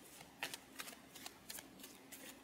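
A deck of tarot cards being handled by hand, shuffled or flicked through: faint, irregular soft card clicks, about half a dozen in two seconds.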